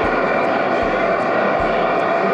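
Steady hiss of static from an amateur radio transceiver's speaker as it receives between transmissions.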